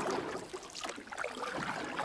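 Faint, low-level ambient noise with a few light scattered ticks.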